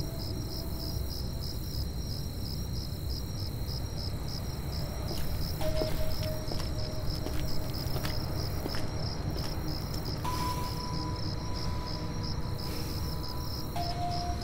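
Crickets chirping in an even, steady rhythm over a low, dark music drone; held notes come in about six and again about ten seconds in.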